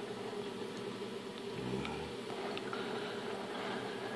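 HHO (oxyhydrogen) torch flame running with a steady, even buzzing hiss, held on a steel razor blade as it burns through it. A few faint ticks sound over it.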